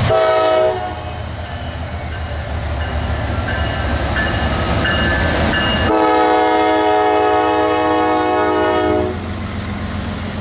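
Norfolk Southern freight locomotives (GE D9-44CW and ES44DC diesels) passing close by with a steady rumble of engines and wheels. A locomotive air horn sounds a short blast at the start and a long blast of about three seconds beginning about six seconds in.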